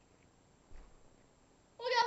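A soft low thump, then near the end a loud, high-pitched, drawn-out meow-like cry begins.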